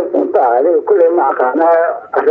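Speech only: a man talking without pause in Somali.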